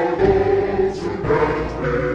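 Music: a choir singing long held notes.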